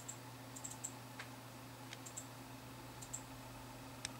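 Faint, irregular light clicks, several in quick pairs, over a steady low hum.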